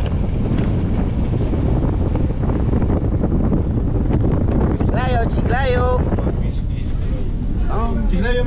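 Wind rushing past an open window of a moving combi minibus, buffeting the microphone over the van's road and engine noise. A man's voice calls out briefly about five seconds in.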